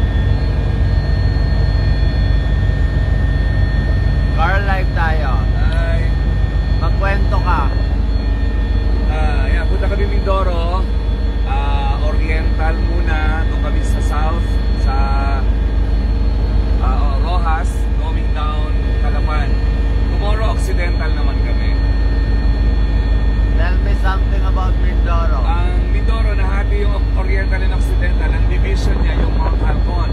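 Helicopter engine and rotor noise heard from inside the cabin: a loud, steady low drone with several steady whining tones held over it.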